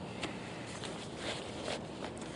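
A few soft rustles of a paper envelope and suit-jacket fabric as the envelope is slipped into an inside jacket pocket, over a quiet background.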